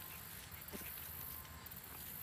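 Faint outdoor background hiss, with one soft brief sound a little under a second in.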